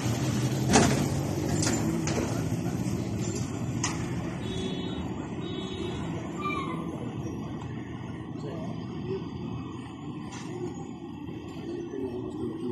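Street noise: a motor vehicle's engine running with a low steady hum that slowly fades, a sharp knock about a second in and a few lighter clicks, and indistinct voices.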